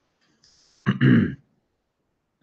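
A man clears his throat once, a short, loud rasp about a second in, preceded by a faint hiss.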